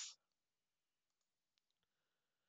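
Near silence, with a few faint clicks of a computer mouse a little past the middle.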